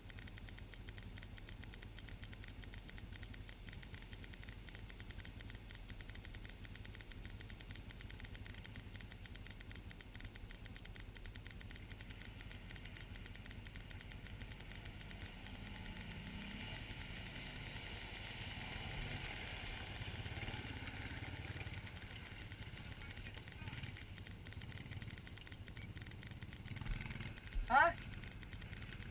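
ATV engines: a steady low hum from the machine close by, with a second ATV in the creek whose engine grows louder about halfway through and fades again. A short voice says "huh" at the very end.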